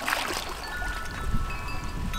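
Pool water splashing as a person drops under the surface at the start, then chime tones ringing over wind rumbling on the microphone.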